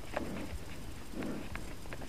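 Mountain bike rolling over a bumpy dirt trail, with the bike rattling and clicking irregularly over the ground and low thuds about once a second.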